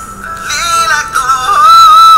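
Pop song playing: a sung melody line that bends in pitch comes in over the backing track about half a second in and grows louder toward the end.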